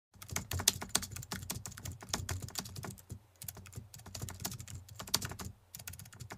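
Rapid, irregular clicking of computer keyboard typing, with brief pauses about three seconds in and near the end.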